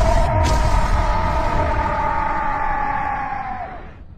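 Anime energy-blast explosion sound effect: a heavy rumble with a long held tone over it, and a brief crack about half a second in. The tone dips slightly and fades out near the end.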